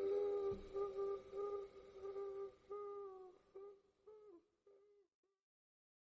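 A single held musical note with rich overtones, the last note of a song, breaking up into shorter and shorter fading pulses that sag slightly in pitch before it stops about five seconds in.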